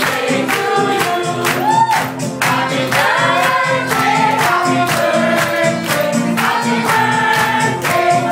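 Music with several voices singing together over a steady beat.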